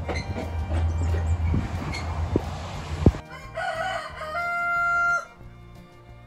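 Rooster crowing once, about three and a half seconds in, its last long note held and then cut off suddenly. Before it there is steady outdoor noise with a sharp click just past the middle.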